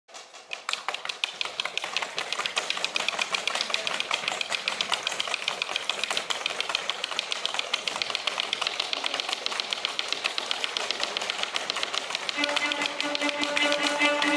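A rapid, steady train of dry clicks, like typewriter keys clattering, fading in over the first second. About twelve seconds in, a held bowed string note with rich overtones comes in under the clicking.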